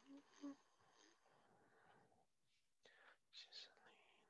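Near silence with faint, indistinct speech, a voice too quiet to make out, coming through a video call.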